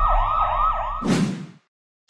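A siren sound effect wailing in a fast yelp, sweeping up and down about four times a second. About a second in, it is cut off by a short, loud rush of noise that quickly fades away.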